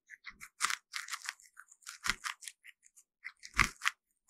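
Guinea pig biting and chewing kernels off an ear of corn on the cob: a run of irregular crisp crunches, the loudest a little after three and a half seconds in.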